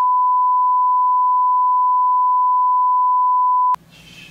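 A single loud, steady censor bleep, one pure high tone held for about four seconds over explicit words being read aloud. It cuts off abruptly near the end.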